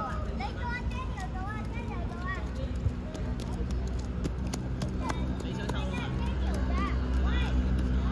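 Young footballers shouting and calling to one another across the pitch, with scattered sharp clicks, over a steady low hum of city traffic.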